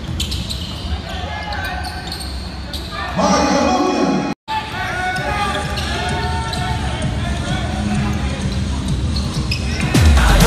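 Basketball being dribbled on a hardwood court during live play, with players' voices and sneaker squeaks ringing in a large gym.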